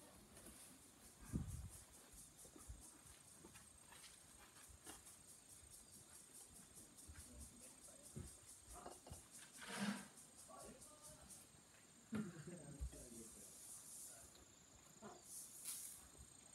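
Near silence outdoors: faint insects chirping in an even pulse of about four beats a second, with a few soft thumps.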